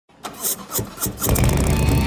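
Harley-Davidson Road Glide's V-twin engine being started: a few cranking pulses, then it catches and runs loud about a second and a quarter in. Rock music with electric guitar comes in over it near the end.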